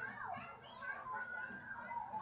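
Children playing, their high voices calling and talking, as passed through Sony WH-1000XM4 headphones in ambient (transparency) mode.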